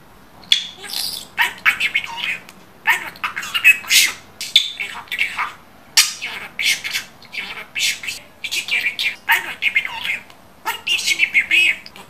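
Pet budgerigar chattering: quick runs of high-pitched warbles and squawks, broken by short pauses.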